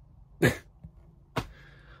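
A man's two short, breathy vocal bursts, like a cough or a laugh: a loud one about half a second in and a fainter one about a second later.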